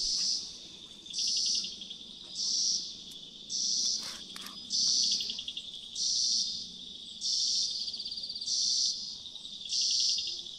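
Insects calling: a steady high, pulsing trill underneath, with a louder high buzz that repeats about once a second, each burst lasting about half a second.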